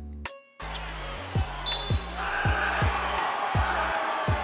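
Background music with a deep kick-drum beat, about three thumps a second, starting after a short gap about half a second in. A haze of arena crowd noise rises under it about two seconds in.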